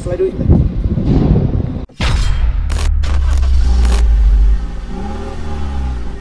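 A voice over background sound, then an abrupt cut into a logo-sting sound effect: a loud, deep, steady rumble with a few sharp high swishes, ending in sliding pitch glides.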